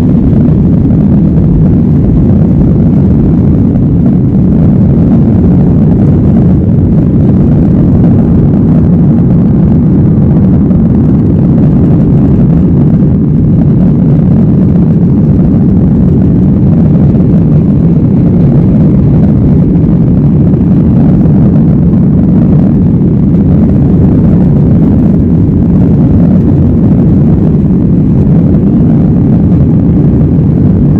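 Jet airliner's engines and rushing air heard inside the cabin at takeoff thrust: a loud, steady low rumble through the takeoff run and the climb-out.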